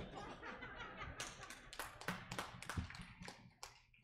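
Metal music stand being lowered and moved aside: a quick, irregular run of light clicks and knocks.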